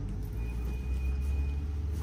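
Low engine rumble of a road vehicle passing, swelling through the middle and easing near the end, with a faint thin steady tone for about a second.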